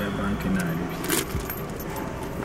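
A short metallic jingle a little over a second in, like small metal objects shaken together, over brief low talk in a car cabin.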